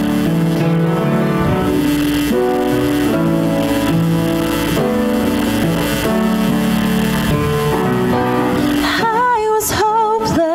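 Church worship band playing a slow song intro of held piano chords with acoustic guitar; a solo singing voice with vibrato comes in about nine seconds in.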